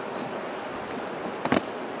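Golf discs knocking together as one is pulled out of a disc golf bag, with one sharp plastic click about a second and a half in, over a steady rush of flowing river water.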